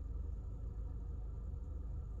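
Steady low hum inside a car cabin, with no distinct events.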